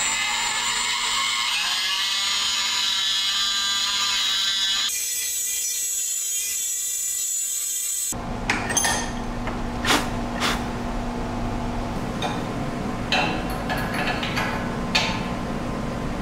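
Small cordless rotary tool spinning a carbide burr at high speed with a steady high whine, grinding a metal bracket to clear a rivet. The sound changes about five seconds in and the tool stops about eight seconds in, leaving scattered clicks and knocks of parts being handled.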